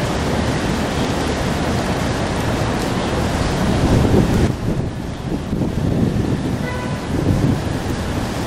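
Wind buffeting the microphone over city street noise: a steady rushing with an uneven low rumble that loses much of its hiss about halfway through.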